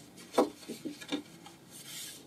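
Pages of a watercolor journal being turned by hand: a sharp tap about half a second in, a few lighter paper rustles, then a soft paper sweep near the end.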